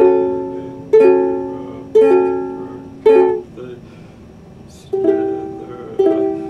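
Ukulele chords strummed about once a second, each left to ring and fade. After four strums there is a pause of about a second and a half, then two more strums near the end.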